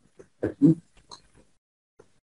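A brief, clipped vocal sound from a person: two short bursts about half a second in, then a few faint scraps.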